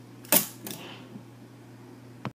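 A sharp clack of metal set down on a wooden workbench about a third of a second in, followed by a lighter knock and a faint tap.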